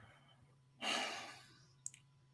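A person sighing: one breathy exhale about a second in that fades away, then a brief faint click, like a lip smack, near the end.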